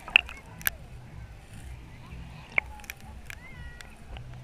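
Muffled sea-water sound of a waterproof action camera moving at and below the surface, with a low rumble and three sharp clicks of water against the case: one near the start, one about half a second later, and the loudest about two and a half seconds in.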